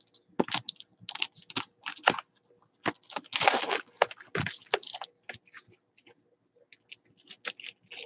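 Trading-card packaging being handled: crinkling and tearing with scattered sharp clicks and taps, densest about three to five seconds in.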